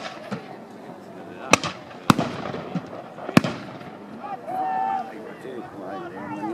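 Black-powder musket shots crack out at irregular intervals, three clear ones about a second apart, each trailing off in a short echo. Near the end a voice calls out.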